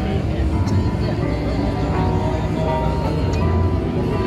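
Instrumental backing track playing through a small portable PA speaker, with held notes and a steady bass line.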